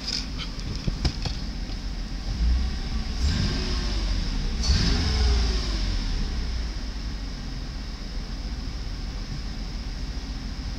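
2001 Mercedes-Benz CLK320's 3.2-litre V6 engine idling, revved up and back down twice about two and a half to five and a half seconds in, then settling back to a steady idle. A few sharp clicks in the first second or so.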